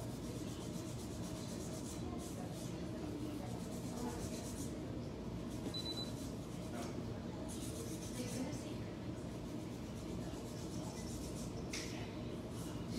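Soft scratchy rubbing and a few brief rustles from nitrile-gloved hands working a fine nail-art brush over a client's nail, over a steady low hum.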